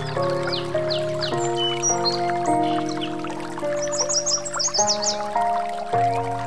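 Slow, soft relaxation music of held chords that change every second or so, layered with birdsong chirps and a bed of running water. A quick run of high chirps comes about four seconds in.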